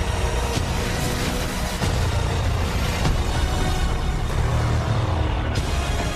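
Dramatic film score with a heavy low drone, with a few sharp impacts from the fight's sound effects cutting through it, about half a second, a second and three-quarters, and three seconds in.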